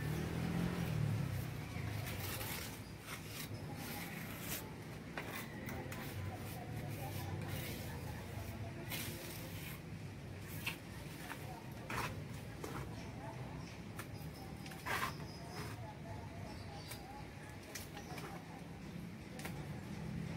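Scattered light knocks and taps over a quiet, steady low background hum.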